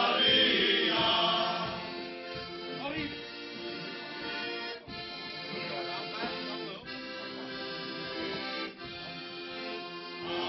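Men's choir singing in unison, the voices stopping about two seconds in; an accompanying instrument then plays steady sustained chords alone as an interlude.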